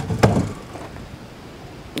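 A small wooden chicken-coop door being handled and swung open: a sharp click at the start and a short knock or rattle just after, then only a low background hiss.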